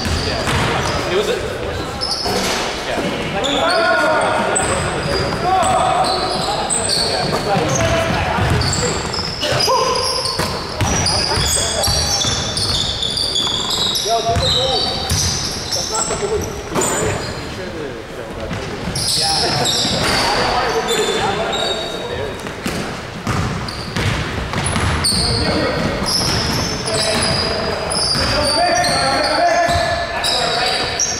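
Basketball being dribbled and bouncing on a hardwood gym floor, with repeated sneaker squeaks and players' voices calling out. Everything echoes in a large gymnasium.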